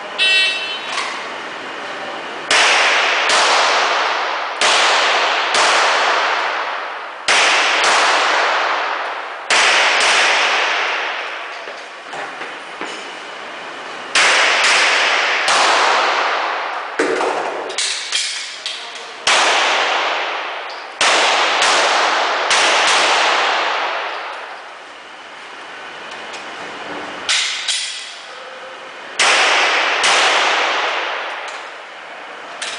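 A pistol fired more than a dozen times at an uneven pace, each shot sharp and followed by a long ringing tail in the enclosed range bay, with two gaps of several seconds between strings. It opens with the shot timer's short high beep.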